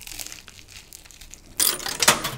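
Crisp stuffed dosa being bitten into and chewed close to the microphone: crackly crunching, much louder near the end.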